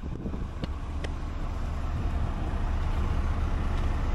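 Street traffic noise: a steady low rumble of passing vehicles, with wind blowing on the microphone.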